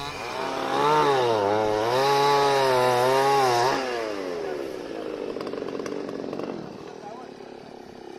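Chainsaw running under load as it cuts felled tree trunks, its engine pitch rising and falling; it drops to a quieter running sound about four seconds in.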